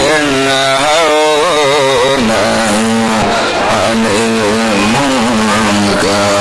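A man's voice chanting through a microphone in a drawn-out, melodic style, with long held notes that waver and bend in pitch.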